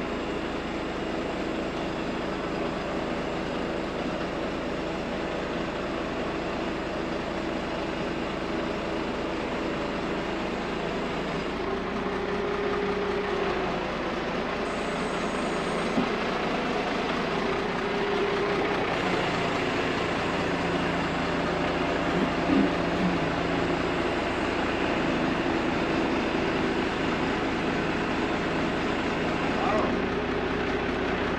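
Truck engine running steadily to drive its truck-mounted loader crane, with a hum from the crane's hydraulics that shifts pitch a few times as the crane is worked. A couple of short sharp knocks come partway through.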